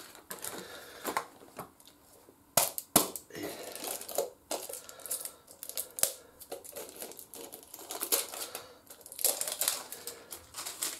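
Small cardboard oil-filter box rustled and crinkled by hand as a new spin-on oil filter is taken out, with irregular clicks and taps throughout, the sharpest about three seconds in.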